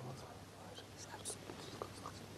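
Faint whispering, one man murmuring into another's ear, with a few soft clicks over a low steady room hum.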